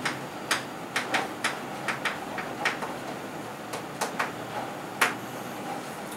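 Chalk tapping and ticking against a chalkboard as a word is written: about a dozen irregular sharp ticks over five seconds, with a short pause near the middle.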